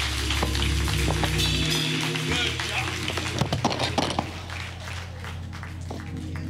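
Church band music with low held bass notes as a song winds down, under voices from the congregation; a few sharp hits about halfway through, after which the music gets quieter.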